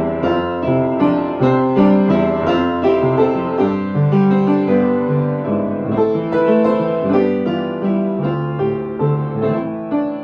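Piano playing a continuous passage of chords over a moving bass line, the notes changing in a steady rhythm without a break.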